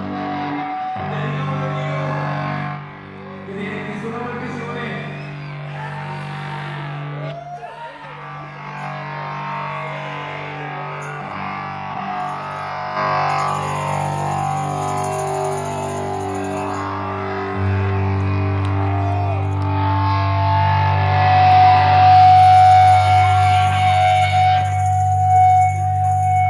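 Live electric guitar through an amplifier playing a rock song's opening: long, sustained chords ringing out. A deeper held note comes in about two-thirds of the way through, and the sound grows louder.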